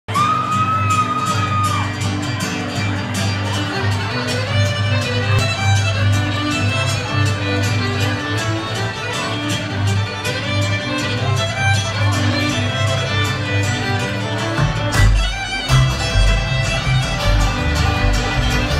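Live bluegrass string band playing an instrumental passage, the fiddle leading over banjo, guitar and upright bass. A long held note opens it, and the low bass notes come in stronger about fifteen seconds in.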